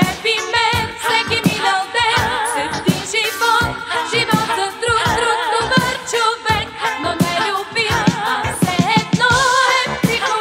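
Bulgarian pop song: a female voice sung with wide vibrato over a band accompaniment with a steady beat.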